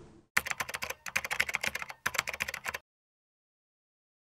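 Rapid computer-keyboard typing, a quick run of key clicks in three bursts over about two and a half seconds, cutting off suddenly.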